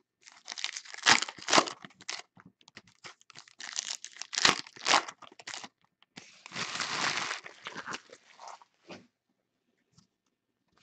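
Foil trading-card pack wrapper being torn open and crinkled in the hands, in a run of sharp crackles, with a denser stretch of rustling about six seconds in that dies away near the end.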